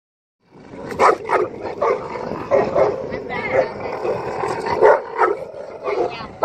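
Dogo Argentino barking repeatedly, starting about half a second in, in short barks roughly half a second to a second apart, during a dominance standoff with another dog.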